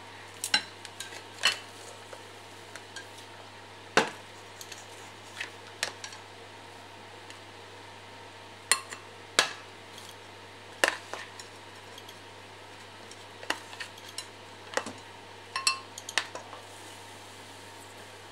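Metal spoon clinking and scraping against stoneware bowls while scooping cooked rice, in a dozen or so irregular sharp clinks.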